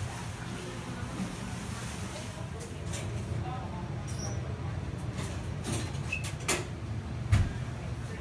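Indoor shop ambience: a steady low hum, faint distant voices, and a few scattered clicks and knocks, with one louder thump near the end.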